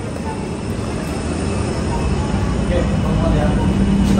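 Steady low rumble of airport background noise, slowly growing louder, with a low steady hum coming in about halfway through.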